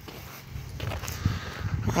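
Footsteps on a dirt road, with a low rumble on the microphone.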